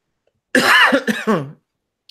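A man coughs to clear his throat, in two quick parts starting about half a second in.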